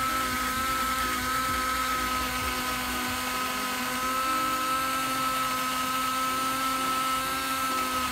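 Black+Decker 18 V cordless drill running at one steady speed, spinning a potato skewered on a wood bit against a hand peeler; its motor whine holds a single pitch throughout.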